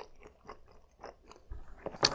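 Faint, close-miked mouth sounds of chewing a bite of soft, sauce-glazed eel nigiri: scattered small wet clicks and smacks.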